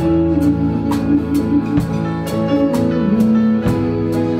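A small acoustic folk band playing an instrumental passage: two acoustic guitars strummed and an accordion holding chords. The strokes fall in a steady beat of about two a second.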